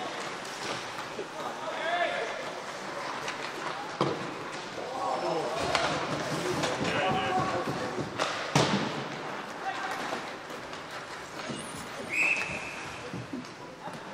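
Ice hockey play in a rink: players' shouts and voices over the game, with sharp knocks of stick or puck about four seconds in and again past the middle, and a short high tone near the end.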